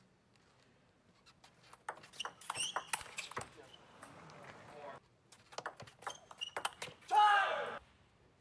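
Table tennis ball clicking off bats and table in quick, sharp hits during a rally, in two bursts. A short burst of voice follows near the end.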